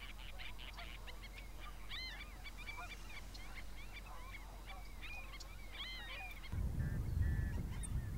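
A dense chorus of many birds calling over one another, with repeated arching, honk-like calls. About six and a half seconds in, the chorus cuts off and gives way to a low rumble with a few faint chirps.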